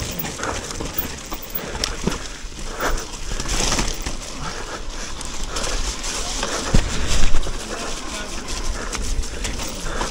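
Electric mountain bike ridden fast over a wet, stony, rutted trail: tyres crunching and rattling on mud and loose stones, with frame and suspension clatter and wind rushing on the microphone. A louder clatter comes about seven seconds in.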